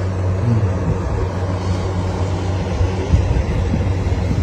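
A steady low rumble with a constant hum underneath, running evenly without any sharp events.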